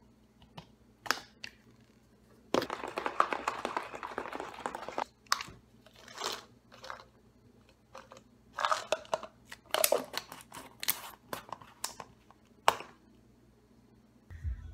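Clicks of a plastic shaker bottle and scoop, then about two and a half seconds of the bottle being shaken to mix the drink. Later, capsules rattle in a metal supplement canister as they are tipped out into a hand, with intermittent clicks and rattles.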